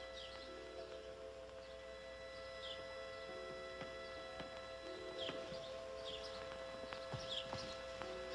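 Faint background music of soft held notes, with short, falling bird chirps scattered through it.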